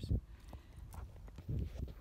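A few irregular soft knocks and clicks from a Tennessee Walking Horse's hooves shifting on a gravel road as the horse stands.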